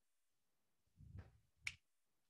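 A single sharp click of a whiteboard marker being capped or handled, preceded by a soft low bump of handling; otherwise near silence.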